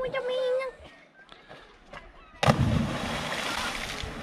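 A person plunging into the sea after jumping from a rock ledge: a sudden loud splash about two and a half seconds in, its noise carrying on for over a second. A short held call from a voice comes at the start.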